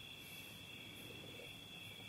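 Faint, steady high-pitched trilling of crickets over quiet room tone.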